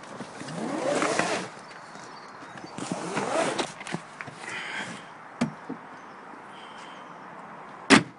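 Fishing gear being handled and packed: two bursts of scraping and rustling, a small click, then a sharp bang near the end, the loudest sound.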